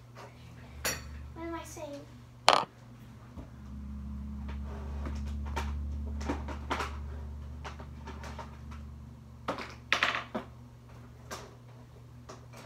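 Scattered knocks and clatters of small objects being handled away from the microphone, with one sharp click about two and a half seconds in and a cluster of clicks near the end. A faint distant voice comes briefly near the start, and a low steady hum runs through the middle.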